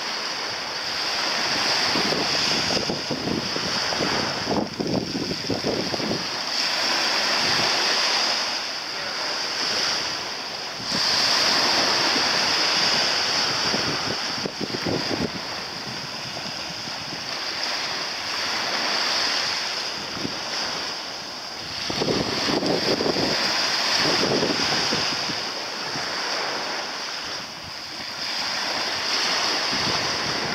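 Wind buffeting the microphone over the lapping and sloshing of shallow sea water, swelling and easing every few seconds.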